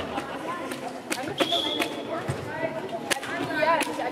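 Handball game ambience in a sports hall: scattered voices calling and chatting, sharp knocks of a ball bouncing and feet on the hall floor, and a short high steady whistle tone, likely the referee's whistle, about a second and a half in.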